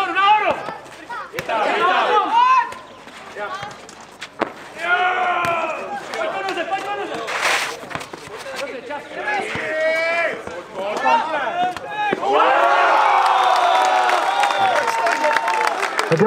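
Nohejbal players shouting to each other during a long rally, with sharp knocks of the ball being played. About twelve seconds in, many voices break into sustained cheering and shouting as the rally is won.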